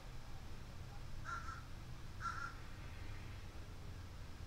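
A bird calling twice outdoors, two short calls about a second apart, over a steady low hum.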